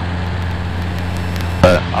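Cessna 150's four-cylinder Continental O-200 engine and propeller running steadily in cruise, a constant low drone heard inside the cabin. A voice starts a word near the end.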